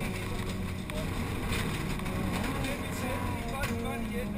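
Subaru Legacy 2.0 Turbo's turbocharged flat-four engine working hard at stage pace, heard from inside the cabin, with a few sharp knocks on the body.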